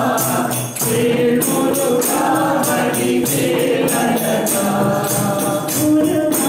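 Group singing a Hindu devotional bhajan to a hand-held tambourine struck in a steady beat of about three strokes a second.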